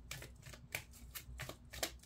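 A deck of oracle cards being shuffled by hand: a string of short card clicks and slaps at an uneven pace, about three or four a second.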